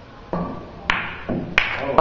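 Pool shot: a cue striking the cue ball, then two sharp clacks of billiard balls hitting, about a second in and again half a second later.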